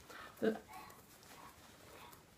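A single short spoken word, then quiet room tone with faint rustling as a sewn fabric bag is handled.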